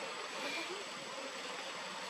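Steady outdoor background noise, an even hiss with a thin, steady high-pitched tone running through it and no distinct event standing out.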